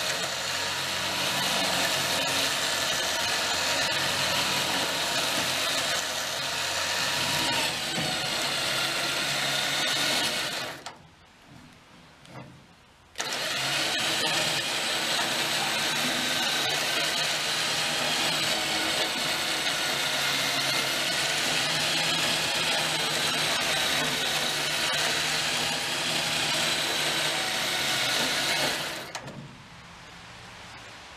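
Electric winch motor whining steadily under load as it pulls a heavy lift up onto a trailer, stopping for about two seconds near the middle, then running again until just before the end.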